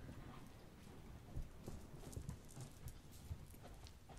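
Faint, irregular knocks and taps in a quiet room, with one louder thump about a second and a half in and a cluster of small clicks soon after.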